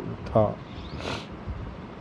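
A man's narrating voice speaks one short word, then pauses; about a second in comes a brief breathy hiss, likely an intake of breath before the next phrase.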